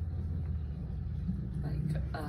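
A steady low rumble with faint, muffled voices, one voice becoming clearer near the end.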